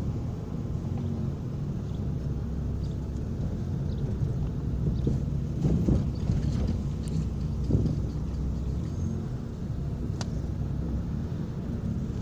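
Steady low rumble of a car's engine and tyres heard from inside the cabin as the car moves slowly, with a few faint knocks and a brief click.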